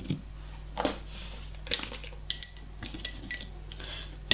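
A handful of separate small clicks and clinks as plastic pots and nail tools are handled on the desk, with the lid coming off a pot of clear builder gel. In the second half the clinks come closer together and a few ring briefly.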